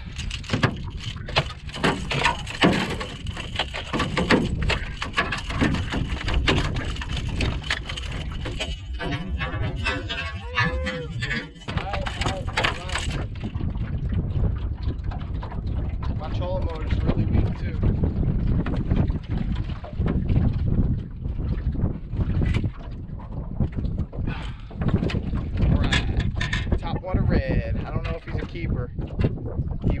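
Wind buffeting the microphone in an open fishing boat, with repeated knocks and handling noise from rod, reel and gear while a hooked redfish is fought and brought aboard.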